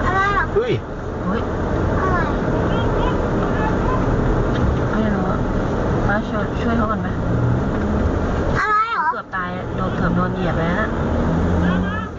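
Steady low hum of a car engine running, heard inside the cabin through a dashcam microphone.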